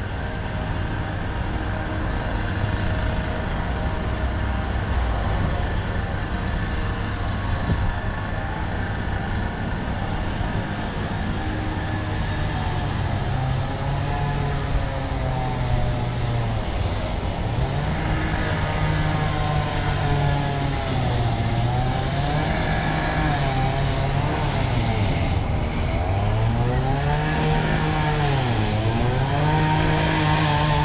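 Engine of a power tool running nearby and revving up and down over and over, its pitch rising and falling every two to three seconds from about twelve seconds in. It sounds like a chainsaw, but is taken for some kind of high-pressure tool. A steady low rumble runs underneath.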